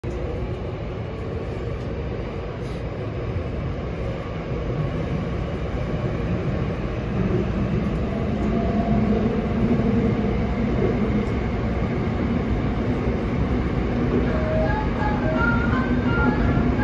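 Seoul Subway Line 6 electric train running, heard from inside the car: a steady rumble of wheels and motors that grows somewhat louder about halfway through. Near the end a few short chime notes begin.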